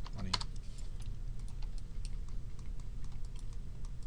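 Computer keyboard typing: a run of scattered key taps and clicks over a steady low hum.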